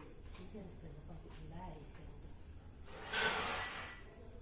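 A monocled cobra hissing once, a short breathy hiss about three seconds in that lasts under a second. Faint voices murmur before it.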